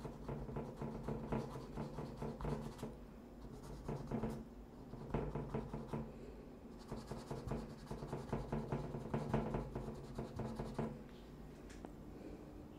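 Paintbrush scrubbing and dabbing acrylic paint onto a stretched canvas in quick, short, repeated strokes, with light taps on the canvas. The strokes stop about a second before the end.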